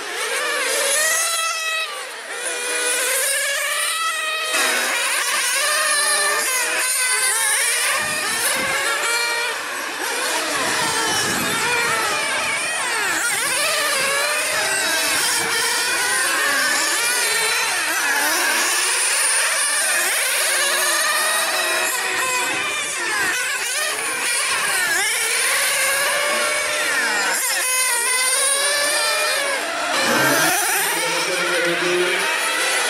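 Several 1/8-scale nitro on-road RC cars racing, their small glow engines overlapping in high-pitched whines that keep rising and falling as each car accelerates and brakes around the track.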